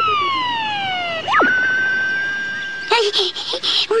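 Electronic sci-fi beam sound effect as alien figures are lowered in a cone of light: several tones glide slowly downward together, then a quick swoop up about a second in settles into one steady held tone. A voice starts near the end.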